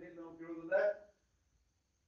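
A man speaking for about a second, his voice breaking off into a second of complete silence.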